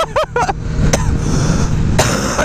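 Motorcycle engine running steadily at highway speed, with wind noise over the rider's camera microphone.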